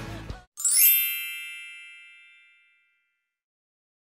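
The last of a song cuts off, then a single high, bell-like ding rings once and fades out over about two seconds.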